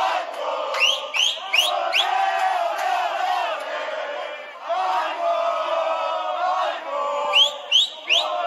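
Crowd of football supporters chanting and singing together. Several short rising whistles cut in, one after another, about a second in and again near the end.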